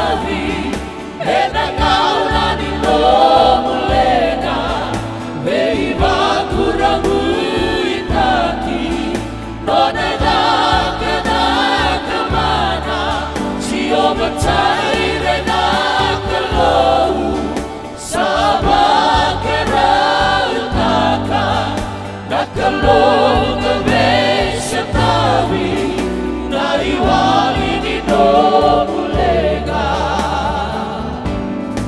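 Mixed male and female worship group singing a Fijian-language hymn together in harmony, accompanied by a strummed acoustic guitar.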